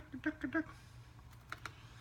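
African grey parrot making a quick run of short clucking notes, about eight in under a second, followed by a few sharp clicks a little over a second in.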